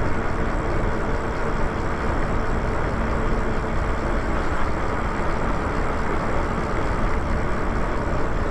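Steady wind and road noise from a Lyric Graffiti e-bike riding along a paved street, with a faint steady hum underneath.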